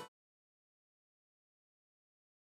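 Silence: the electric guitar cuts off right at the start, and then there is no sound at all.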